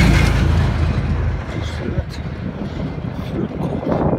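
A heavy truck passing close by: a low engine and tyre rumble, loudest at the start and fading over the next couple of seconds.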